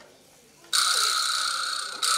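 Vibraslap, the manufactured version of the quijada jawbone rattle, struck a little under a second in: a sudden, bright buzzing rattle that holds on and fades slightly, then struck again right at the end.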